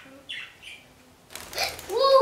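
Pet budgie giving a few short falling chirps, then a flurry of wingbeats about one and a half seconds in as it takes off from its perch. A louder short cry comes at the very end.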